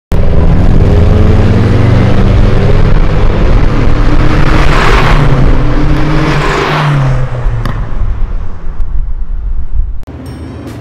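Loud classic-car engines revving, their pitch rising and falling. Two loud swells about five and six and a half seconds in sound like cars driving past, then the sound dies away over the last few seconds.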